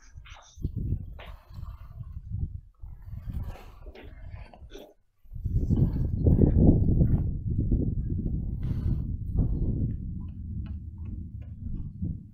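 Footsteps on stony, gravelly ground outdoors, with wind buffeting the microphone. The rumble gets louder and steadier from about five seconds in.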